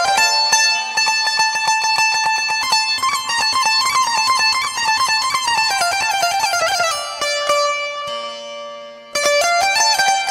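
Instrumental music led by a plucked string instrument playing quick melodic runs that wind downward. About seven seconds in, a note is left to ring and fade, then the fast playing starts again just before the end.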